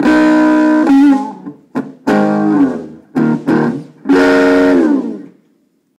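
Electric guitar played through a vintage RCA tube amplifier, believed to be from the 1950s, with its original speakers: a short run of chords, several sliding down in pitch. The last chord is held and dies away near the end.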